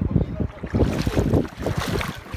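Wind buffeting the microphone in irregular gusts, with water splashing as feet wade through shallow seawater, the splashing loudest near the end.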